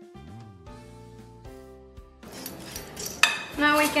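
Metal balloon whisk clinking and scraping against a glass bowl as it stirs cream of corn into an egg batter. It starts a little over halfway through, after soft background music.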